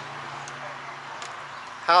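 Wind blowing outdoors, picked up as a low, steady hiss by an action cam's microphone with its wind reduction filter on, which keeps out the usual low rumble. A faint steady hum runs underneath.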